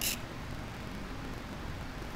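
Steady low background noise of the room, with no distinct sound events.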